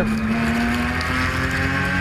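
Race car engine heard from an onboard camera, pulling steadily with its pitch slowly rising as the car accelerates.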